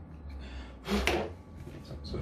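Handling noise on a plastic puzzle cube after hobby-knife scraping, with one brief loud rustle-and-knock about a second in.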